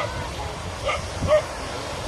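A dog barking in three short yips, the last one the loudest, over steady background noise.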